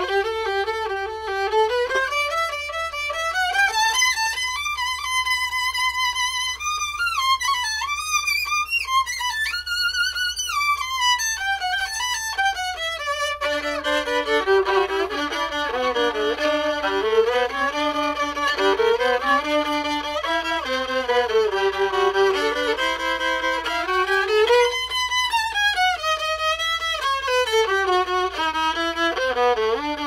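Solo violin played with the bow, a melody climbing into the high register over the first several seconds, then dropping suddenly to the lower strings about halfway through and winding up and down there.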